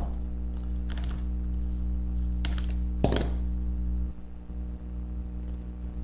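Small cardboard trading-card box being handled and slid open by hand: a few short, light taps and scrapes, spread over the first three seconds or so, over a steady low background hum.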